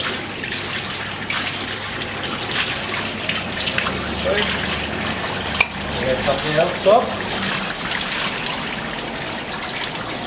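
A liquid jet from a hand-held spray wand hissing steadily and splashing onto the contact assemblies of an oil-filled 33 kV tap-changer as they are flushed clean, with the runoff splashing into the tank below.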